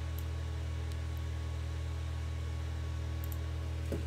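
Steady low electrical hum with evenly spaced overtones, with a few faint computer-mouse clicks.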